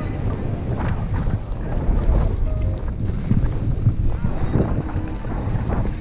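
Wind buffeting an action camera's microphone, a steady low rumble, with a few short swishes of skis sliding on snow.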